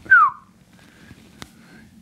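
A short, loud whistle that glides down in pitch, lasting about a quarter of a second, followed by a single faint click about a second and a half in.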